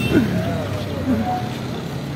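Town street traffic: passing cars and motorcycles running, with distant voices, and a short steady high tone a little over a second in.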